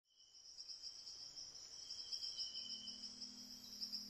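Faint chorus of insects, a high-pitched fast-pulsing trill fading in at the start. About two-thirds of the way through, a low steady musical drone comes in beneath it.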